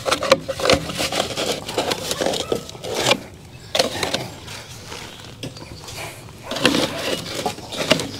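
A black corrugated plastic drain pipe tee being pushed and twisted onto cut pipe ends in clay soil: irregular scraping, rubbing and knocking of plastic on plastic and dirt. It goes quieter for a few seconds in the middle, then busier again near the end.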